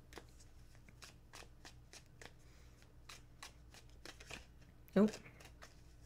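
A deck of cards being shuffled by hand: a quiet, irregular run of short card clicks and flicks, several a second.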